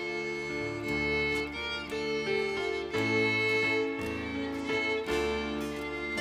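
Instrumental introduction to a slow hymn: a violin plays the melody over keyboard chords and acoustic guitar, with bass notes changing about once a second.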